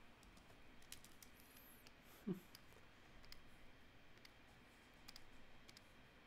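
Near silence with faint, scattered clicks of a computer mouse and keyboard. One brief, low hum-like vocal sound comes a little over two seconds in.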